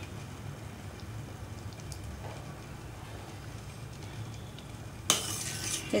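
Metal ladle scraping and clinking against the side of a steel pot as thick tomato sauce is stirred, starting suddenly about five seconds in. Before that only a low steady background with a couple of faint clicks.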